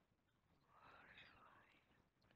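Near silence, with one faint whisper from the narrator about a second in.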